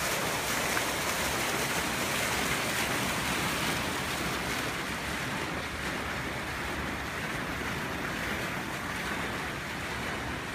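Stone courtyard fountain with water splashing into its basin: a steady rushing hiss that grows a little fainter about halfway through.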